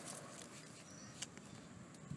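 A small test mud brick dropped onto hard ground in a drop test: a faint, short, sharp knock a little over a second in, with a lighter click just at the start, over quiet outdoor background. The brick lands intact, passing the test.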